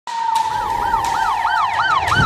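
Siren yelping in quick rise-and-fall sweeps, about three a second, over a steady tone that slowly sinks in pitch, starting sharply at the very beginning.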